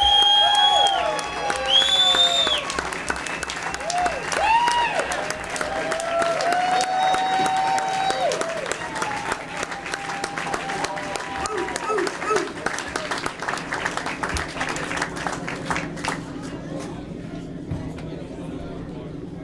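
Club audience applauding and cheering a performer's introduction, with shouted whoops and high whistles in the first few seconds. The clapping thins out and fades near the end.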